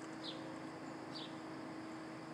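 Faint, short high chirps, each falling in pitch, repeated about once a second, over a steady low hum.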